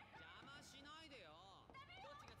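Very faint voices speaking and shouting: dialogue from a television show playing at low volume.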